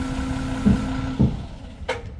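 Svetruck 1260-30 heavy forklift's diesel engine idling with a steady low hum, with two knocks a little after half a second and about a second in. The hum then stops and the sound falls away, with a sharp click near the end.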